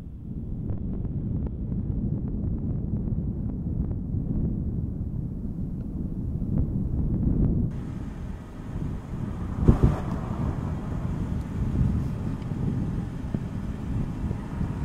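Low rumbling wind noise on an outdoor microphone, with a single sharp thump about ten seconds in.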